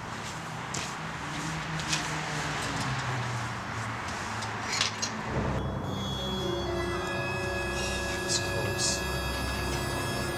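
A busy wash of sound gives way, about five seconds in, to a low drone. Soon after comes a steady high-pitched hum at several pitches: the Sky-Watcher EQ6-R Pro equatorial mount's motors slewing the telescope.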